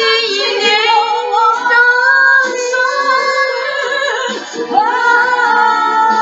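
A woman singing into a handheld microphone, holding long notes with a wavering vibrato, with a short break about four and a half seconds in before the next phrase begins.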